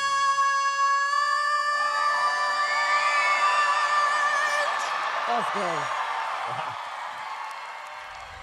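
A female singer holds a long, high belted note over backing music, and it ends about a second and a half in. The audience then cheers and whoops, and the cheering fades toward the end.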